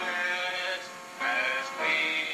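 A song playing: a sung melody with held notes over instrumental backing, briefly quieter about halfway through.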